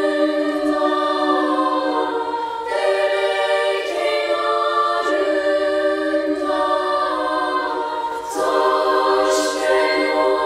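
Female youth choir singing a cappella in close harmony: long held chords that move to new chords every two to three seconds, with only high voices and no bass line.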